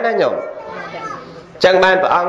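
A man speaking, giving a sermon in Khmer. A phrase ends with a falling pitch, there is a pause of about a second, and speech picks up again near the end.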